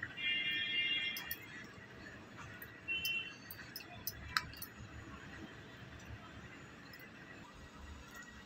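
Mostly quiet room with a brief high-pitched squeal-like tone lasting about a second near the start and a shorter one about three seconds in. A metal spoon clicks faintly against the steel plate a few times, once more sharply about four and a half seconds in.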